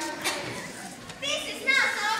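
Children's voices: a child speaking, with a high-pitched voice rising and falling in the second half.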